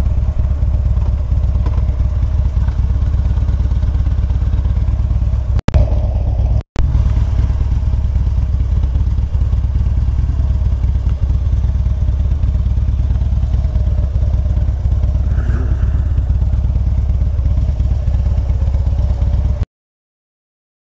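Motorcycle engine running at low speed, a steady low sound. It drops out twice, briefly, about six seconds in, and cuts off just before the end.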